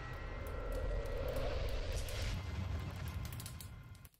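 Sound effects of an animated logo intro: a deep rumble under a rushing swell that peaks about two seconds in, then fades and cuts off suddenly at the end.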